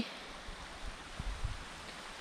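Steady, even outdoor water hiss, with a few faint low thumps.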